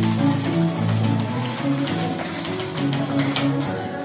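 Live dance music: plucked harp notes in a steady run, under a continuous high jingling of bells.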